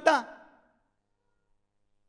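A man's amplified speaking voice ending a word and trailing off within the first half-second, followed by about a second and a half of dead silence.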